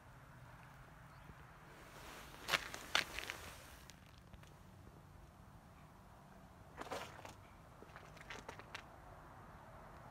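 Faint outdoor background broken by two short clusters of sharp crunches and clicks. Two louder ones come about two and a half and three seconds in, then a quieter run from about seven to nine seconds in.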